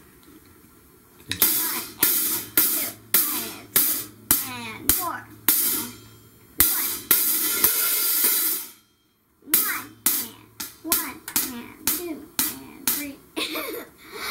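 A young child hitting a drum kit loosely and unevenly, cymbal and drum strikes at about two a second. Midway one cymbal is left ringing for about two seconds. The sound then drops out completely for about half a second before the hits resume faster.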